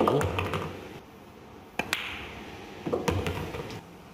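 Sharp clicks of a pool cue and balls on a jump shot, with a pair of hard clicks close together about two seconds in.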